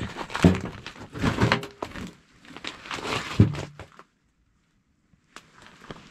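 Rustling and crunching handling noise with a few short pitched squeaks. It cuts off into dead silence about four seconds in.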